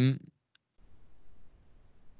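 A man's word trails off, then a short pause holding one faint click about half a second in and a low, even background hiss.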